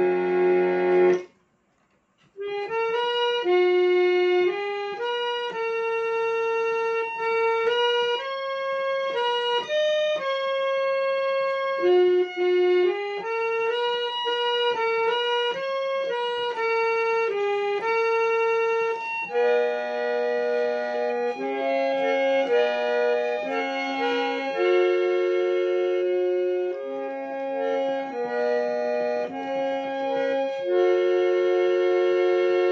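Indian reed organ playing a hymn tune in sustained reedy notes. A chord ends about a second in, followed by a brief pause before the melody resumes. About twenty seconds in, lower notes join for fuller chords.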